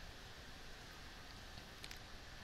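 Faint steady room hiss with a faint click near the end.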